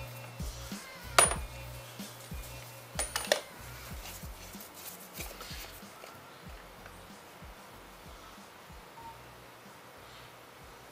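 Sharp metallic clinks, one about a second in and a quick cluster around three seconds in, each with a short high ring, as a steel socket and extension are handled and set down on the engine. Then small faint ticks and rustles of hands working the plastic oil filter housing cap.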